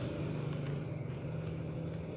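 Steady low hum of a running engine or motor.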